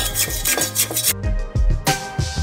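Electric hand mixer creaming butter and sugar in a stainless steel bowl, its beaters and a spatula rattling and scraping against the metal, over background music. The mixing sound stops about a second in, and then only the music is heard.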